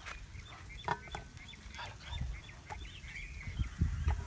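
Chickens clucking and calling in the background, many short calls in quick succession, over a low steady rumble, with a few soft knocks near the middle.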